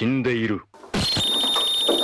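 A brief bit of speech, then an added comic sound effect: a hiss with a steady high ringing tone, about a second long, cutting off suddenly.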